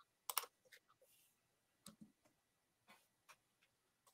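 Faint computer mouse and keyboard clicks over near silence: a sharp double click shortly after the start, then a few softer scattered ticks.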